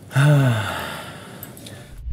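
A person's voiced sigh just after the start, falling in pitch and trailing off into a breathy exhale.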